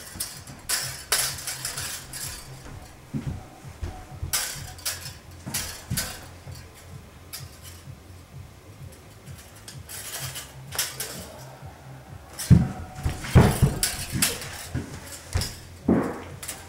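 Metal wire whisks clashing together in a mock sword fight: repeated light metallic clinks and rattles of the wire loops, with a few louder clashes near the end.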